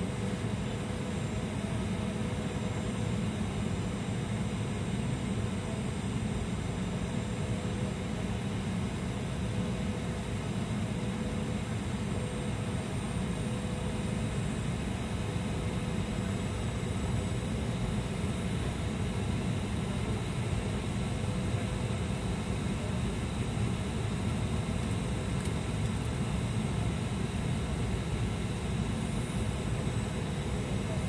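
Steady airliner cabin noise in flight, a constant rumble heaviest in the low end with a faint steady hum over it.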